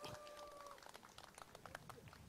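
Near silence: faint outdoor background with a few soft ticks, and a faint steady high tone held for under a second near the start.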